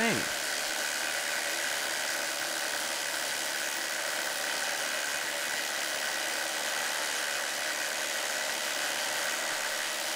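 Two cordless impact drivers, a Milwaukee M18 compact brushless and an M12 Fuel, hammering together at a steady level while driving stainless steel lag screws into treated 6x6 lumber with no pilot holes. The work is a heavy load for both tools, and the M12 slows slightly under it while the M18 keeps its speed.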